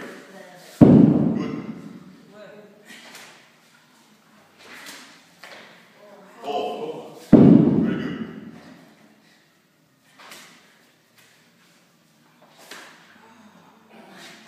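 Heavy Atlas stone dropped from the shoulder onto the rubber gym floor twice, about six and a half seconds apart. Each landing is a loud thud that dies away over a second or so, and each marks the end of a stone-to-shoulder rep.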